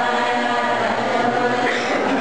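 A group of voices chanting in unison, with long held notes.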